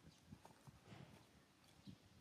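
Near silence: faint outdoor room tone with a few soft taps and rustles.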